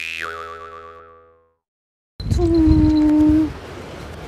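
A cartoon 'boing' sound effect: a high tone that drops and wobbles, fading out over about a second and a half. After a short silence, a louder steady held tone lasts just over a second over low wind-like noise.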